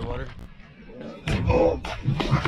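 A large salmon splashing in the river as it is lowered by hand over the side of a boat and released, with a loud burst of splashing about a second in.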